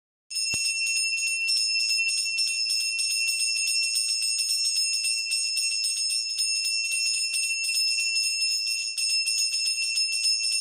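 A hand bell rung rapidly and without pause during arati, the lamp-waving worship before a shrine. It starts suddenly just after the beginning, with a bright, steady ring on two clear pitches.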